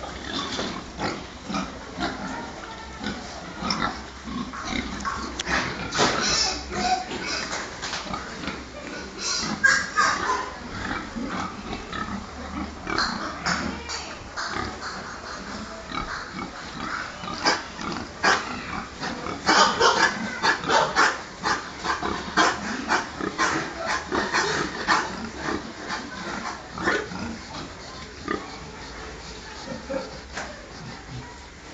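A pen of domestic pigs calling: many short, overlapping calls throughout, with louder outbursts about ten seconds in and again around twenty seconds.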